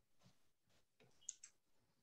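Near silence: room tone with a couple of faint clicks about a second and a half in.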